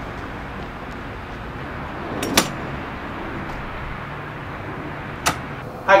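Two-wheel football throwing machine running with a steady hum; a little over two seconds in, a single sharp hit as the ball is shot out between the spinning wheels. A short click near the end.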